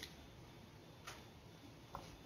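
Near silence with three faint ticks about a second apart: a felt-tip marker touching and lifting from paper as lines are drawn.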